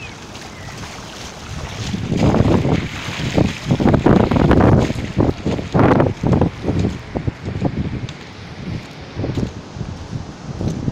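Wind buffeting the microphone in irregular, choppy gusts, loudest from about two seconds in to about seven, over the steady rush of heavy surf and seawater running in a channel across the beach.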